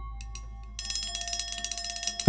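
Metal percussion in a free improvisation: a struck metal instrument rings on and fades. A little under a second in, a fast, bright metallic jingling rattle starts and carries on.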